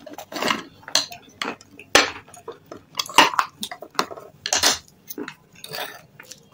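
Metal spoon clinking and scraping in a stainless steel bowl of thick red paste, a dozen or so irregular sharp clinks.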